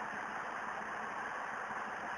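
Quiet, steady hiss of background room noise with no distinct events.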